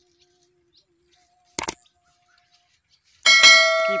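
Subscribe-button overlay sound effects: a single mouse-click about one and a half seconds in, then a loud bell notification chime ringing for about a second near the end.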